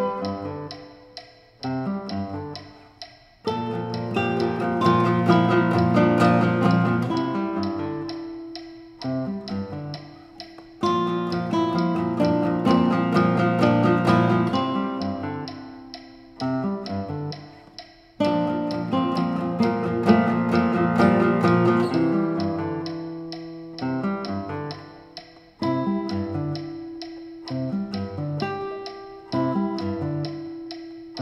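Duo of nylon-string classical guitars playing a slow piece: plucked chords and melody notes in phrases that ring and fade away, each new phrase starting with a fresh attack.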